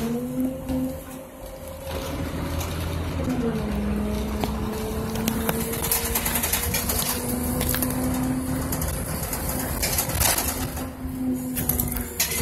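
City bus drivetrain heard from inside the passenger cabin: a steady whining hum over a low rumble. The hum drops in pitch about three seconds in, then holds. Scattered rattles and knocks come from the bus interior.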